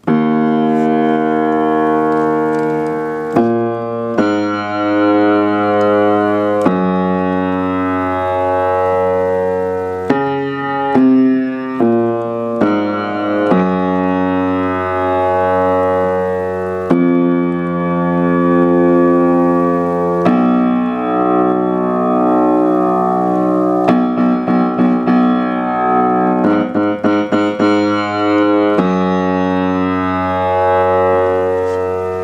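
Piano playing slow, sustained chords that change every few seconds, with a run of quick repeated notes about three-quarters of the way through.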